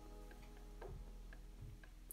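Quiet room tone with a faint steady hum and a few faint, short ticks.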